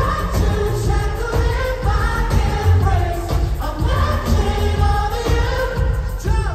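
Live pop song played through a large concert PA and recorded from the audience: a sung vocal line over a heavy, pulsing bass beat.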